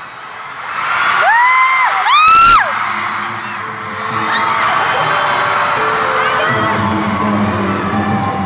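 A fan close to the microphone screams twice in the first three seconds, high-pitched and loud, the second scream the loudest and ending in a sharp crack. After that, live music with singing carries on over a steady crowd noise in the arena.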